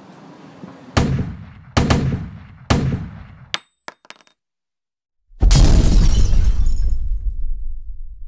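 Sound effects: three loud sharp bangs a little under a second apart, each ringing out, then a brief high metallic ring and a few clicks. After a second of silence comes a loud crash that fades away over about three seconds.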